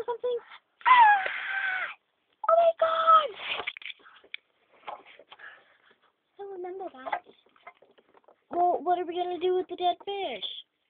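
A high-pitched voice making wordless vocal sounds: a falling cry about a second in, shorter cries after it, and a long held steady tone near the end.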